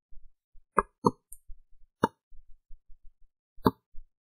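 Four sharp clicks of a computer mouse: two in quick succession about a second in, one at two seconds, and one near the end.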